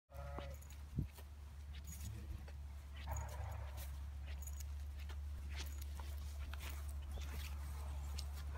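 Footsteps walking across a grass field, with scattered light clicks and rustles, over a steady low rumble.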